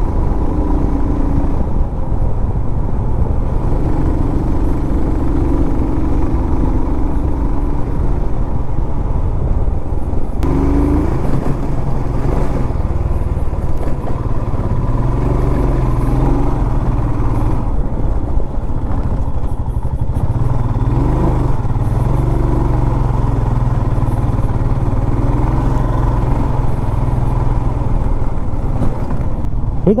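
Royal Enfield motorcycle engine running steadily under load as the bike climbs a rough hill road, with wind rushing past. The engine note changes about ten seconds in, as with a throttle or gear change.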